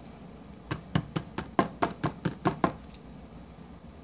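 A knife tapping against a silicone soap mould: about ten quick, sharp taps at roughly five a second, starting under a second in and stopping about a second before the end.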